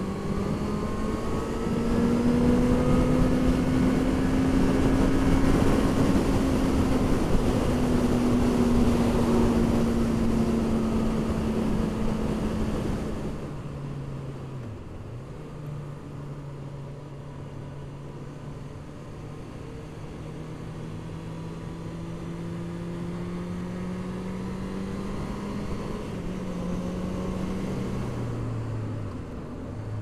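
Honda CB650F's inline-four engine running at road speed under heavy wind rush on the microphone. About 13 seconds in, the wind dies down and the engine note drops, then climbs slowly and steps down again near the end.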